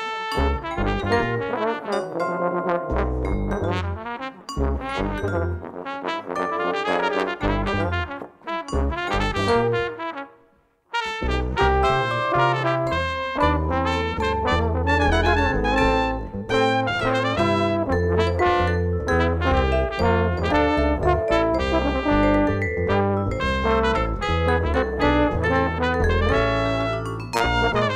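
Live jazz from trombone, trumpet, vibraphone and bass guitar playing together, the trombone and trumpet in front. The band breaks off for a moment about ten seconds in, then comes back in with a fuller bass line.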